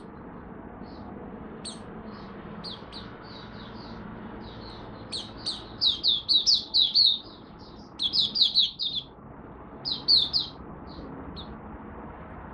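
Caged white-eye (mata puteh) singing. Soft scattered chirps at first give way to three loud bursts of fast, high chirping about five, eight and ten seconds in. The bird is in a light moult and off form.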